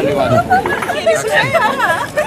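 Several people talking over one another in lively, animated conversation, with some voices rising high in pitch.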